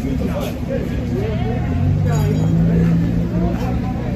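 Steady low rumble of an idling vehicle engine, a little louder about two seconds in, under several people talking indistinctly.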